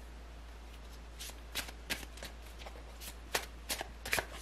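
Tarot cards being shuffled and handled off the table: a run of about a dozen irregular crisp snaps and flicks, starting about a second in.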